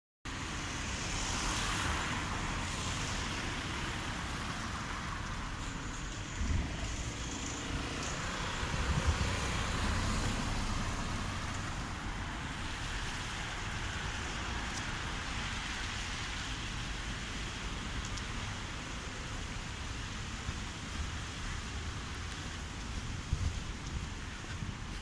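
Steady outdoor town-centre traffic noise, a continuous wash of road sound with low rumble, starting abruptly just after the opening and rising in a few brief louder swells between about six and ten seconds in.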